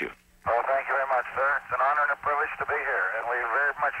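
A man's voice relayed over the space-to-ground radio link from the space shuttle Challenger, thin and narrow like a telephone, with a steady low hum under it: an astronaut answering the President's farewell.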